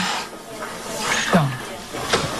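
A person's breathy exhale, then a short wordless murmur that falls in pitch about a second and a half in.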